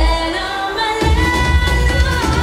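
Song with a voice singing long held notes, played loud over PA speakers; the bass drops out at the start and comes back in about a second in.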